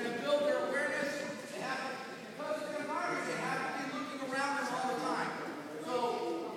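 Speech: voices talking in a large, echoing gym, the words not made out.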